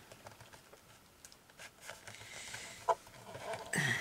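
Faint handling of a paper sheet on a paper trimmer's plastic bed: light sliding and a few small clicks and taps as the sheet is lined up for a cut, with one sharper click about three seconds in.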